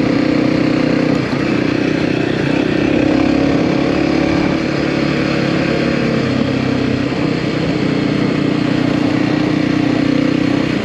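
Dirt bike engine running steadily while riding a rough dirt track, its note stepping up and down slightly several times as the throttle changes.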